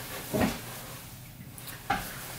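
Two brief handling noises, about a second and a half apart, as a person settles into a seat close to the camera, over a low steady room hum.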